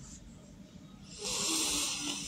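A person's short breathy exhale close to the microphone, a sigh with a faint voiced hum, starting about a second in and lasting under a second.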